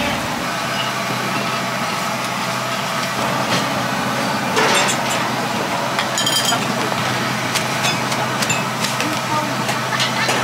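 Busy street-food kitchen ambience: a steady low rumble with background voices, and scattered clinks of ceramic bowls and metal utensils being handled.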